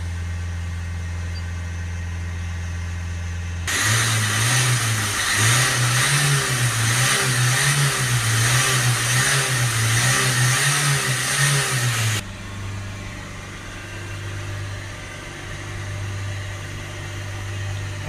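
Renault Trafic 1.6 dCi four-cylinder diesel engine held at about 3,000 rpm to clear its freshly cleaned DPF. It runs steadily as heard from the cab. About four seconds in it becomes much louder and rougher at the exhaust tailpipe, with the revs wavering slightly, then drops back to a quieter steady drone a few seconds later.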